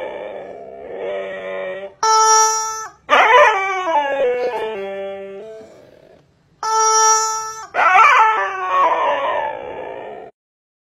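Husky howling in long calls that slide down in pitch. Twice, about two seconds and seven seconds in, a steady electronic-sounding tone of about a second cuts in between the howls.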